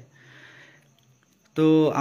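A man's short breath in through the nose, a soft sniff, in a pause between sentences. His voice resumes near the end.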